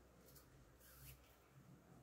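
Near silence: room tone, with two faint, brief rustles of sewing thread being drawn through ribbon.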